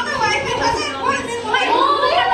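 Excited, overlapping voices of several young women, high-pitched and clamouring over one another rather than in clear words.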